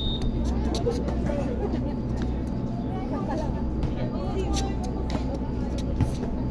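Scattered voices of players and onlookers around an outdoor volleyball court, heard over a steady low hum, with a few sharp taps. A single steady high whistle note cuts off just at the start.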